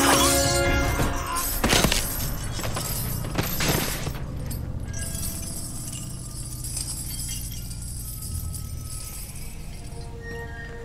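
Film score music with a few sharp impact hits in the first four seconds (about a second and three quarters and three and a half seconds in), the music then sustaining and slowly getting quieter.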